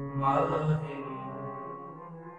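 Harmonium holding a sustained chord at the end of a Sikh kirtan shabad, with the singer's voice swelling briefly over it about a quarter second in.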